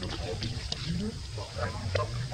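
Indistinct voices with a few short calls that slide up and down in pitch, over a steady low hum.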